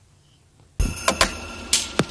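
Electronic transition sound effect: after near silence, it starts suddenly about a second in, with several sharp hits over held bright tones.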